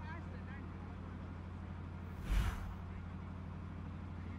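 Outdoor ground ambience: faint distant voices over a steady low hum, with one short loud rush of noise about two seconds in.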